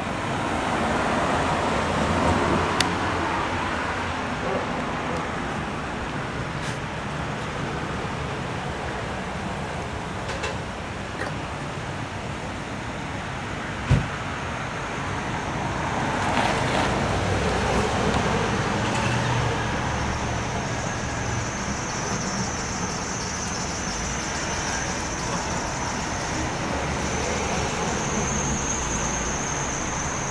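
Road traffic going by: cars passing on the street over a steady hum, swelling about two seconds in and again around sixteen seconds in. A single sharp click about fourteen seconds in.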